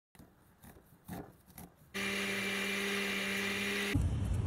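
Faint scraping clicks of a knife cutting kernels off an ear of corn, then about halfway through an electric blender motor starts at a steady pitch and cuts off abruptly at the end.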